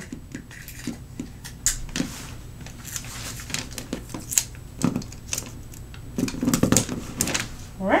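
Wrapping paper being folded and pressed down around the end of a gift box: an irregular run of crinkles, rustles and light taps.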